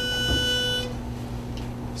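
A pitch pipe blown to give an a cappella group its starting pitch: one steady held note that cuts off just under a second in, leaving a faint low hum.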